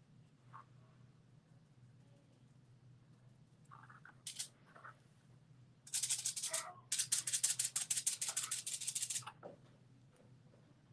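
Paint sponge dabbed on a sheet of aluminium foil, a crisp crinkling rattle in two spells: a short one about six seconds in and a longer one of about two seconds right after. A brief soft hiss comes a couple of seconds before.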